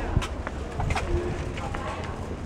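Outdoor ambience with a bird calling, over a steady low rumble and a few short clicks.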